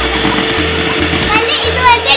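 Electric hand mixer's motor running with a steady hum, under children's voices and music; a child's voice comes in about one and a half seconds in.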